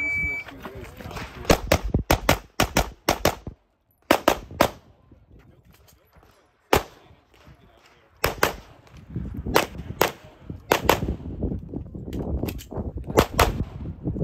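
Electronic shot timer beeps once, then a handgun is fired in a practical-shooting string: about two dozen sharp shots, mostly in quick pairs, in runs broken by short pauses of a second or two.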